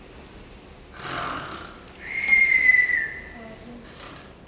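A woman acting out a comic cartoon snore: a short rasping inhale about a second in, then a whistled exhale, one steady high whistle that falls slightly and lasts just under a second.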